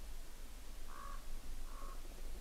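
A bird calling twice, two short calls, the first about a second in and the second near the end, over a low steady rumble.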